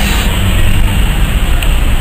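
Steady rumble of a car driving slowly through town, heard from inside the cabin: engine and road noise.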